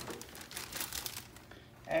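Plastic spoon stirring thick pancake batter and dry mix in a plastic bowl, a run of soft, irregular strokes that fades near the end.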